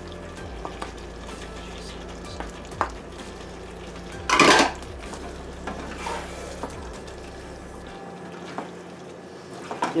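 Wooden spatula stirring a simmering curry in a skillet: a soft, steady sizzle with a few light scrapes, and one louder clatter about four and a half seconds in.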